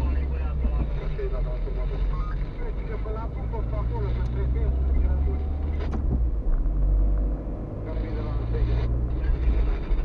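Car engine and road noise heard from inside the cabin while driving, a steady low rumble, with a voice talking over it.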